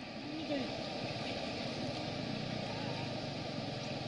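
Steady rushing noise of a river in flood, with faint voices in the background.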